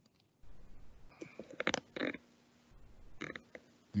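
Faint computer keyboard typing: a few scattered key clicks as a short title is typed.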